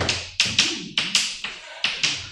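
Chalk writing on a chalkboard: about five sharp taps as the chalk strikes the board, each trailing off into a short stroke.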